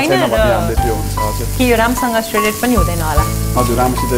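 Marinated chicken searing in a hot frying pan, sizzling steadily, under background music with a singing voice.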